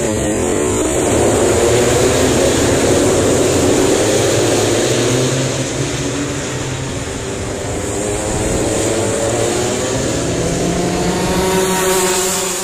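A pack of two-stroke racing kart engines at high revs, many at once, their overlapping pitches wavering and rising as the karts accelerate past through a corner. The sound thins out slightly midway, then builds again as the next karts come through.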